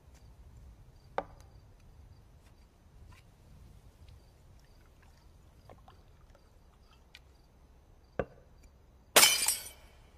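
Quiet ambience with faint, evenly repeating insect chirps. Two sharp knocks come about a second in and again near the end, followed by a short, loud crash that dies away quickly.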